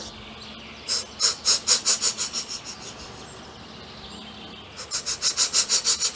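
Cartoon steam locomotive chuffing, a rapid run of hissy puffs at about five or six a second. It fades away in the middle and comes back near the end.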